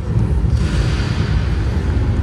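Loud, deep rumbling storm soundtrack with music and thunder-like booms, and a rushing swell about half a second in.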